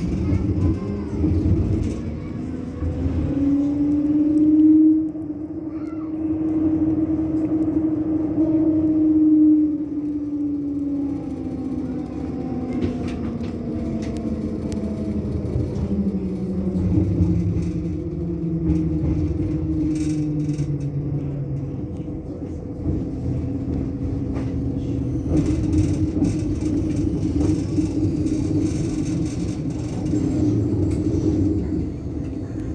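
Bombardier Flexity Outlook tram standing at a stop, its onboard equipment humming with a thin steady whine, while road traffic passes with engine tones that slowly rise and fall over a low rumble.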